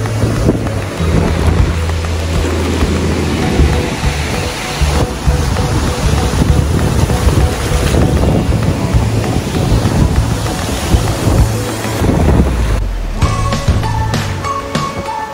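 Sea surf breaking and washing in, with gusting wind buffeting the microphone, under a music track with steady bass notes.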